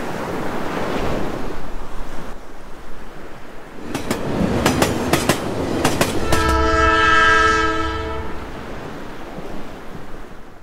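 Train sound: a swelling rumble, then a quick run of sharp clickety-clack wheel clicks, then a horn chord sounding for about two seconds from about six seconds in.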